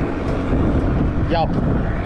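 Wind buffeting the microphone on an open boat: a steady low rumble, with a short spoken "yup" about halfway through.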